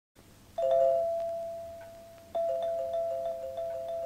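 Two-tone doorbell chime rung twice, about two seconds apart: each time a higher note followed at once by a lower one, dying away slowly.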